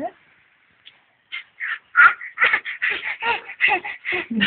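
Young children's babbling: a rapid string of short, high-pitched vocal sounds and squeals, starting about a second in.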